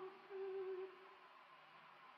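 A single soft held note from the live opera performance, fading out before a second in. After it comes a near-silent pause with faint recording hiss.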